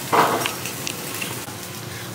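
Diced chicken sizzling steadily in a frying pan kept on a low heat, after a short loud burst of noise right at the start.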